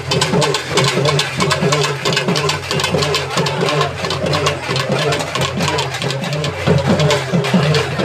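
Processional drums beaten in a rapid, continuous rhythm, with crowd voices over them.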